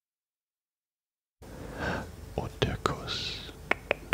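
Close-miked breathing and mouth noises from a commentator between remarks: a soft breath, a brief hiss and a few sharp mouth clicks. The sound starts abruptly about a second and a half in, as if a microphone noise gate has opened.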